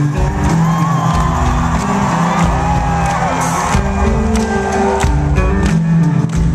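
Live rock band playing: electric guitar over two drum kits and bass, loud and full, recorded from within the audience, with regular drum hits throughout.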